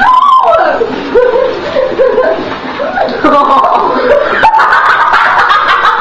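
Girls laughing and squealing with excited, unclear chatter, and one sharp tap about four and a half seconds in.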